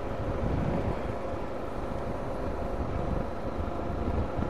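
BMW G 650 GS Sertao's single-cylinder engine running steadily while riding at an even speed, under a steady low rumble of wind and road noise.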